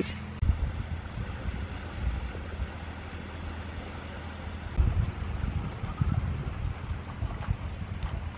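Wind buffeting the microphone over small waves washing on a sandy shore, with gusts about half a second in and again around five seconds in.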